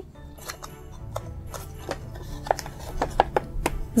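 Stiff laminated cardboard gift box being creased and folded by hand: a series of short, crisp clicks and rubs of card, over soft background music.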